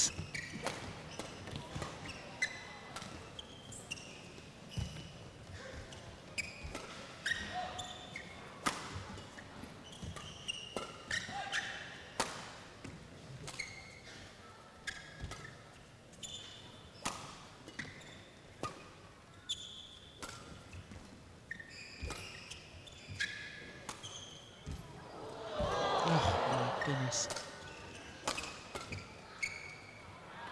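A long badminton rally: sharp hits of rackets on the shuttlecock and shoes squeaking on the court floor. Near the end the crowd noise swells briefly as the rally is decided.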